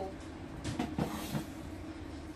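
Blender jar being handled and set down on a kitchen counter: a few light knocks with a brief rustle about a second in, over a steady low hum.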